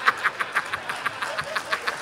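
A man laughing hard into a stage microphone, a fast run of short 'ha' pulses, about eight a second, that fades away across the two seconds.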